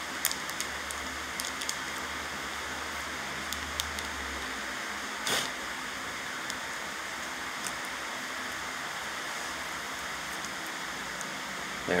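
Steady background hiss with scattered faint clicks and rustles of a baseball card being slid into a plastic penny sleeve, and one louder rustle about five seconds in.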